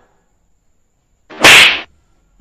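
A single loud, sharp whip-like swish about one and a half seconds in, lasting about half a second, as a balloon is swung at a seated man's head in a balloon slap game.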